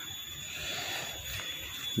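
Faint steady background noise with a thin, steady high whine, and no distinct event.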